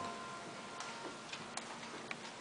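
The last plucked notes of a tembûr ring and die away, leaving a quiet pause broken only by a few faint, scattered ticks.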